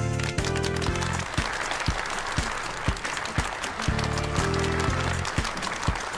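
Audience applauding over background music with a steady beat. Sustained low chords swell at the start and again about four seconds in.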